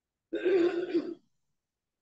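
A man clearing his throat once, a single sound of just under a second.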